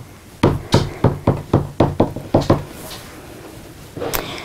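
White Art Graf carbon disc tapped against black multimedia artboard in short dabbing strokes: about ten quick, sharp taps at roughly four a second over two seconds, then stopping.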